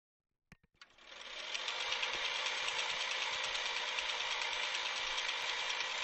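Two sharp clicks, then a steady hiss with fast, light ticking that begins about a second in.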